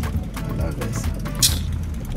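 Low, steady rumble of a car heard from inside the cabin, with a brief hiss about one and a half seconds in.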